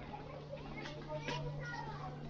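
Children's voices at a distance, playing and calling, with a few short clicks and a steady low hum underneath.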